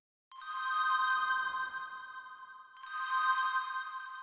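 A bright software-synth chord from the Loophole 3 preset bank played on a MIDI keyboard: struck about a third of a second in and held as it slowly dies away, then played again near three seconds in and left ringing.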